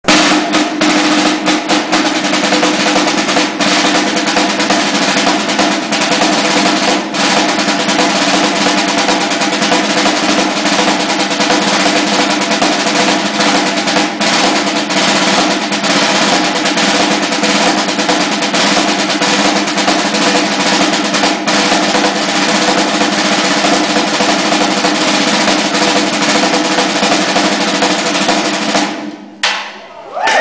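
Marching snare drum played solo with fast, dense strokes and rolls, continuous and loud, stopping about a second before the end.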